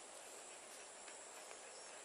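Near silence: faint outdoor background with a steady high-pitched insect chirring, like crickets.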